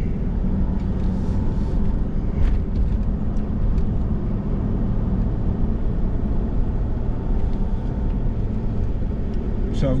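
Pickup truck's engine and road noise while driving slowly, a steady low hum with a few faint clicks, heard from inside the cab.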